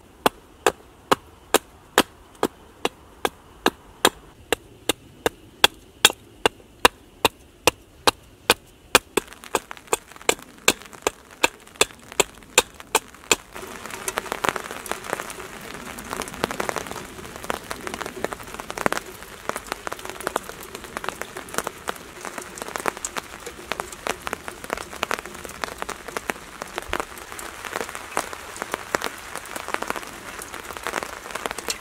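Hatchet chopping into wood with quick, even strikes, about three a second. The strikes stop about halfway through and give way to a steady patter of rain on the tarp overhead.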